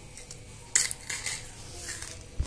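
Hard white banslochan crystals being bitten and crunched: one sharp, loud crack a little under a second in, then a few smaller brittle crunches.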